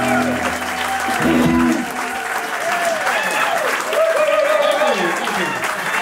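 An acoustic guitar's final notes ring out and stop within the first two seconds, then an audience applauds, with voices calling out over the clapping.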